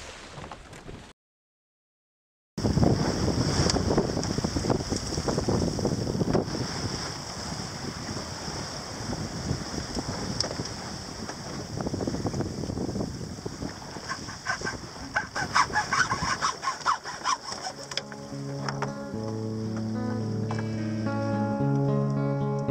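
Water rushing past a sailboat's hull under way, with a run of sharp clicks and knocks from hand work with a tool in the middle. The sound drops out briefly early on, and acoustic guitar music comes in near the end.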